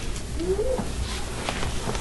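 A short, faint vocal sound about half a second in, rising then falling in pitch, over the room's low steady hum.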